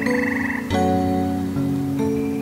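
Slow, calm harp music with sustained plucked notes, and a fresh chord struck about two-thirds of a second in. Over the first notes there is a brief, rapidly pulsing trill that stops when the new chord comes in.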